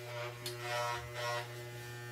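Corded electric hair clippers running with a steady low buzz.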